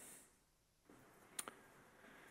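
Near silence in a room, broken by two faint sharp clicks close together about a second and a half in.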